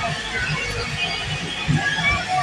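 Loud DJ music with a thumping bass beat played through a truck-mounted sound system in a street procession, over crowd noise.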